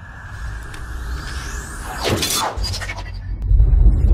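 Channel logo intro sting: a rising swoosh build-up that breaks into a sudden crash about two seconds in, followed by deep bass music that swells toward the end.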